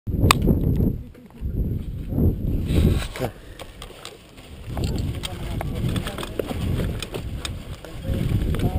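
Low rumbling wind and handling noise on an action camera's microphone, broken by scattered clicks and knocks as the camera is handled and adjusted, with a quieter gap in the middle.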